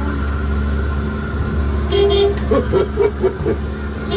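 Horn button on a kiddie-ride car's dashboard being pressed: one toot about two seconds in, then a quick string of short honks, over a steady low hum.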